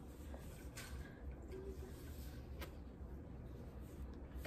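Quiet room tone with a low hum and two faint light clicks as a cardboard gift box is handled.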